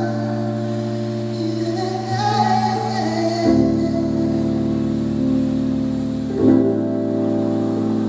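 A small live band playing a slow song: sustained keyboard chords over bass and electric guitar, changing chord about every three seconds, with a singing voice over them in places.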